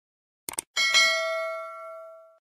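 A quick double mouse click, then a bright bell ding that rings and fades out over about a second and a half. It is the sound effect of a subscribe animation's notification bell being clicked.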